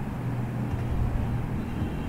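A steady low hum with a faint hiss under it: constant background machine or room noise.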